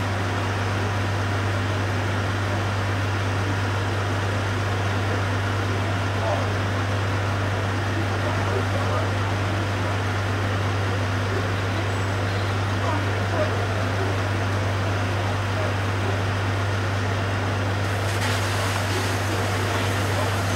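Steady low drone of a fire engine's motor running to drive its water pump, over a constant hiss, with a little more hiss near the end.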